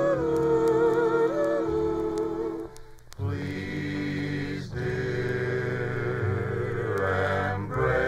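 1950 orchestral pop ballad from a 78 rpm record: a long sung note held with vibrato over the orchestra ends about three seconds in, then a vocal group sings sustained harmony with the orchestra, with a short break near the end.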